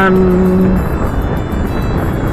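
Strong wind buffeting the microphone over a motorcycle riding at road speed, a steady rushing noise. A man's voice holds a drawn-out syllable for the first part of a second.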